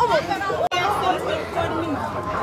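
Young people's voices chattering over one another, the words not clear, with a sudden brief cut-out in the sound less than a second in.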